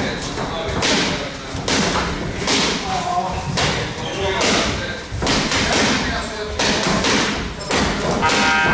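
Punches landing on boxing focus mitts, a sharp impact roughly once a second.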